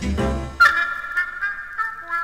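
1960s Greek lounge band music at a break: about half a second in a sharp accented note bends downward, then the bass and drums stop and only held high notes ring on.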